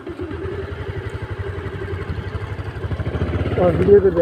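Motorcycle engine running under way, a fast, even firing pulse with a steady engine note. A man's voice starts near the end.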